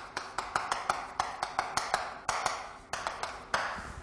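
Chalk on a chalkboard as a word is written: a quick, uneven run of sharp taps with short scratches between them.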